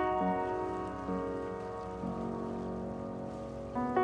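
Ninety-year-old Chappell piano playing a slow, quiet passage: a few notes held and left to ring, with only two or three new notes struck. Near the end, louder notes come in again.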